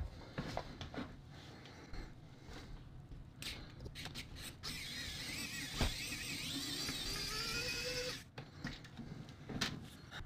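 Precision screwdriver backing out the back-case screws of a handheld multimeter: scattered small clicks, then a steady whir for about three and a half seconds in the second half, rising slightly in pitch near its end.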